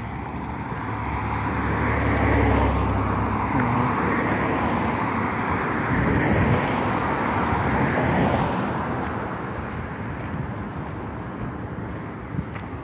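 Road traffic: car noise that swells over the first two seconds, holds for several seconds with a low rumble early on, and fades after about nine seconds, as of vehicles passing on the street.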